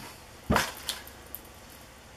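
A single brief handling thump close to the microphone about half a second in, followed by a couple of faint ticks, as a hard plastic crankbait is handled and raised in front of the lens.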